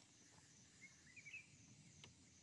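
Near silence: quiet room tone with a faint high hiss, and a few short, faint bird chirps about a second in.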